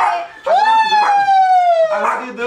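A person's high, drawn-out "woo" howl, starting about half a second in and sliding slowly down in pitch for about a second and a half, like a siren; the tail of an earlier, similar call fades at the very start.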